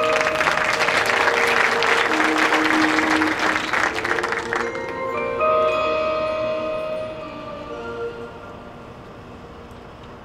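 Marching band front ensemble playing held, ringing mallet-percussion chords, with loud applause from the stands over it that stops abruptly about four and a half seconds in. The music then continues softly on sustained tones and fades.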